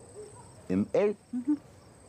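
Brief murmured voice sounds from people, twice in quick succession, over a faint, steady, high-pitched background tone.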